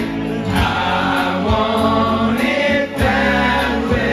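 Several men singing together into microphones over loud amplified pop-rock music with a steady drum beat.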